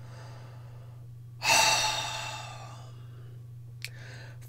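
A woman's long, audible sigh about one and a half seconds in, fading out over a second or so, over a steady low hum.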